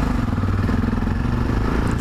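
Yamaha XT 660Z Ténéré's single-cylinder four-stroke engine running steadily at low speed.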